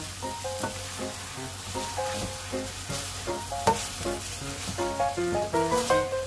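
Tomato and scrambled egg sizzling in a nonstick frying pan while being stirred and turned with a spatula. The spatula scrapes across the pan now and then.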